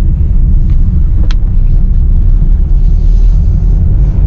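Renault Scala diesel driving, heard from inside the cabin: a steady low rumble of engine and road noise, with a single sharp click about a second in.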